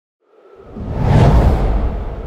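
A cinematic whoosh sound effect with a deep rumble beneath. It swells in from silence, peaks about a second and a half in, then fades away.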